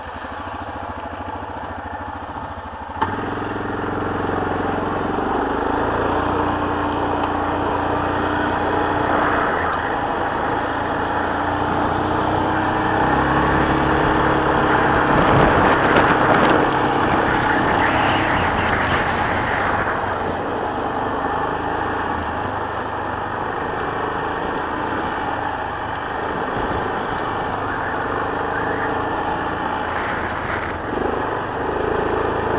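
A 2018 Yamaha Kodiak 450 ATV's single-cylinder engine running as the quad is ridden along a gravel track. The sound steps up about three seconds in as it gets moving. The engine note shifts with the throttle, and the engine and road noise are loudest around the middle.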